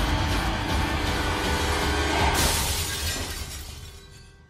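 Dramatic trailer soundtrack: a loud, held music hit with a deep low end, layered with a shattering-glass sound effect whose crackle and hiss fade out near the end.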